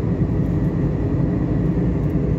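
Steady low rumble of a car driving along a road, heard from inside the cabin: engine and tyre noise.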